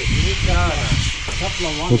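A man's voice murmuring over a steady high hiss, with a low handling rumble in the first second as the lid of a key-cutting machine is lifted.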